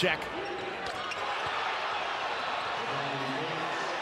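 Basketball game sounds in an arena: a steady crowd hum with the ball bouncing on the hardwood court during live play.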